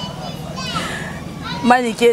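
Children's voices and chatter in the background during a lull in the conversation, then a woman's voice starts up close near the end.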